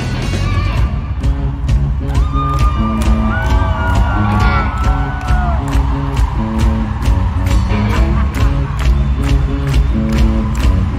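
Live rock band heard from within an arena crowd: a steady drum beat about twice a second over heavy bass and guitar, with voices whooping and cheering. Singing or shouted vocals glide over the beat in the middle stretch.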